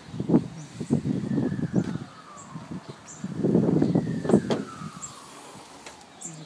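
Footsteps and rustling handling noise as a car's bonnet is released and lifted, with a couple of sharp clicks from the catch and hinges about four and a half seconds in.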